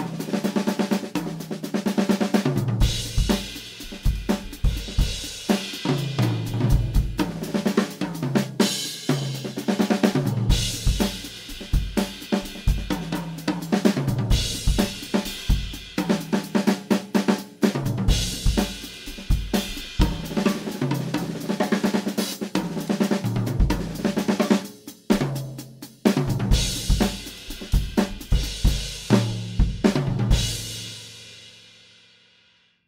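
Acoustic drum kit played solo in a straight-eighth rock groove: bass drum, snare, hi-hat and cymbals, broken up several times by quick one-beat tom fills that land back on the beat with a cymbal crash.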